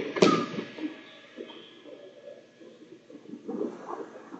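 Two wrestlers scuffling on a foam mat: a sharp thump from bodies and knees hitting the mat just after the start, then quieter shuffling and brushing as one drives up off the bottom and the other sits on his ankles.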